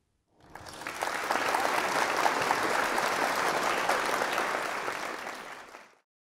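Audience applauding at the end of a talk. The clapping swells in over the first second, holds steady, then fades out near the end.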